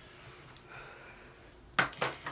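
Quiet room, then a single sharp click near the end as a makeup item is handled on the table.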